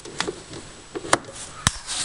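A few sharp, isolated clicks over faint hiss, handling noise around the snowmobile's engine bay; the engine is not running.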